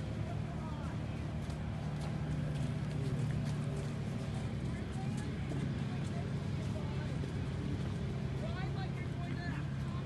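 A steady low engine-like hum, with indistinct voices in the background.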